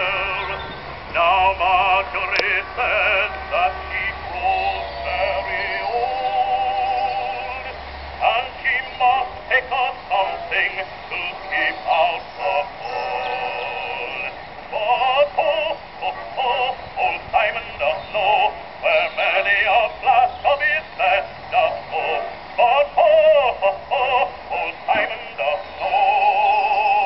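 Edison Diamond Disc phonograph playing an acoustic record of a male bass-baritone singing with orchestra, heard from about 50–60 feet away in the open. The voice comes through clearly, with a wide vibrato on held notes and a run of short, clipped phrases in the second half.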